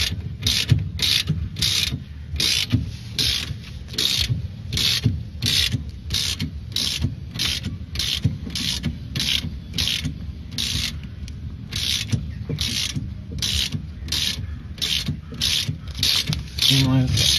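Socket ratchet wrench clicking in repeated back-and-forth strokes, about two a second with a brief pause about two-thirds through, as it undoes a steering tie rod end nut that turns fairly easily.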